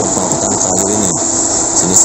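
Diesel engine of an old Renault logging truck running under heavy load with a full cargo of logs, its pitch wavering as the truck works slowly along a rough dirt track.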